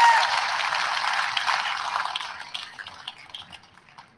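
Audience applause, a dense spread of clapping that fades away through the second half.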